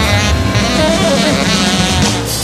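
Jazz quartet playing a loud, dense passage: saxophone lines bending in pitch over piano, upright bass and drum kit.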